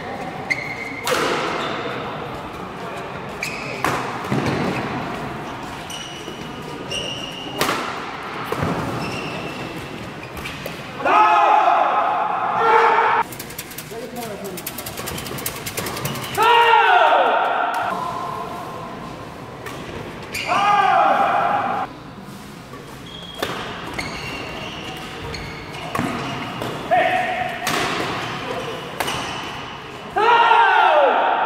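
Badminton doubles play on an indoor court: sharp racket hits on the shuttlecock and short shoe squeaks on the court floor, echoing in a large hall. Loud shouts of a second or two break out several times between rallies.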